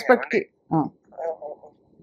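Brief broken fragments of speech with short pauses, the later ones thin and narrow-sounding, like a voice coming over a telephone line.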